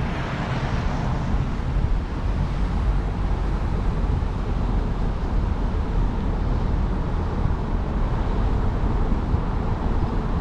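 A car driving along at steady speed: a continuous low rumble of engine and tyres on the road.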